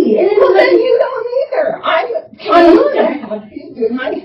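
A woman's voice wailing and whimpering in distress, with a short break about halfway through.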